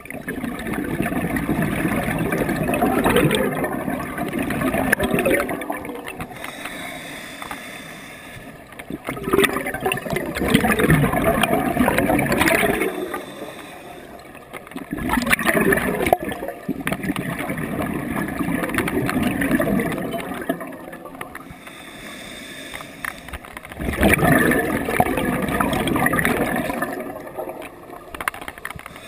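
Scuba regulator breathing heard through a camera's waterproof housing: the exhaled bubbles rush past in four long swells, each several seconds long, with quieter gaps between as the diver breathes in.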